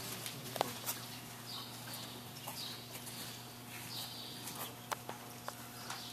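Hoofbeats of a horse moving over soft dirt arena footing: muffled, regular scuffs about every two-thirds of a second, with a few sharper clicks.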